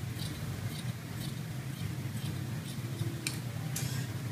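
Fabric scissors snipping through net fabric, a string of light snips about two a second, the last two near the end a little louder.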